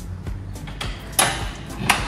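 Fire engine compartment's swing-out air-tank rack being released and pulled out. There is a sharp metal clack a little over a second in, a short sliding rattle, and another clack near the end.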